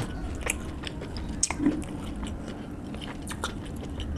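Close-miked chewing of rice and mutton curry, a run of short wet mouth clicks and smacks, with fingers working the food on a steel plate.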